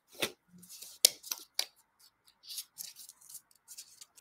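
Hands handling a small paper sticky note and small craft tools on a cutting mat: a string of crisp clicks and paper rustles, the sharpest about a second in.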